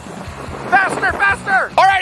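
Background music, with a man's voice talking loudly over it from a little under a second in.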